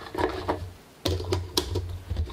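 Plastic clicks and knocks of a rolled film apron and its core being pressed down into a Jobo UniTank developing tank, with a brief pause just before the middle.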